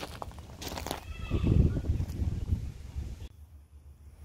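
Footsteps crunching on gravel and handling noises as the Jeep's hood is opened, with a few sharp clicks under a second in and a short squeak about a second in.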